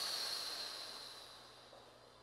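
A long breath blown out through pursed lips, a slow exhale as if blowing a feather upward, fading away over about a second and a half.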